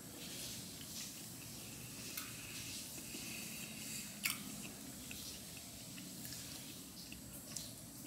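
A person chewing soft food with the mouth closed, with a few short wet clicks of the mouth, over a low steady room hum.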